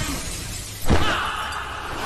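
A large pane of glass shattering as a body crashes through it: one sharp smash a little under a second in, then a ringing spray of falling shards.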